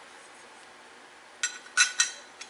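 Two short metallic clinks a second and a half in, as a bicycle chainring is fitted against its crank arm.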